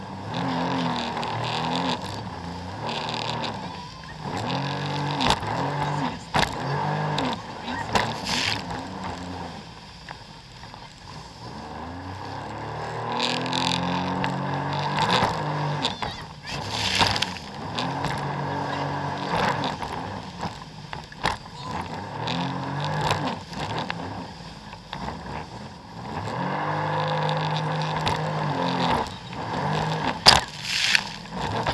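Jet ski engine running at sea, its pitch rising and falling over and over as the throttle is worked and the hull rides the waves, under a steady rush of water and wind. Sharp slaps of water and spray hit the hull and camera now and then.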